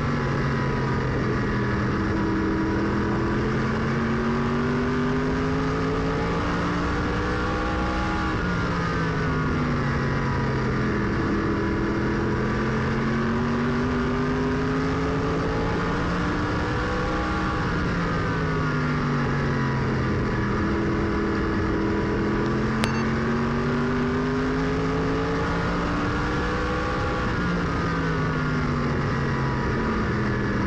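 Tour-type modified race car's V8 engine at racing speed, heard from inside the cockpit. The engine note climbs steadily for several seconds and then drops sharply, over and over about every nine seconds, as the car accelerates down each straight and lifts for the turns. One brief click sounds about two-thirds of the way through.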